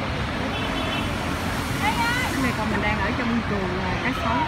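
Background chatter of people's voices, with no clear words, over a steady low rumble.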